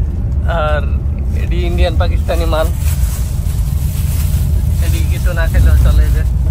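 Steady low rumble of a coach bus driving at speed on a highway, heard inside the passenger cabin.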